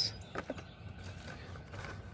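Faint handling noise of blister-carded Hot Wheels cars being sorted, a couple of short clicks about half a second in, over a quiet outdoor background.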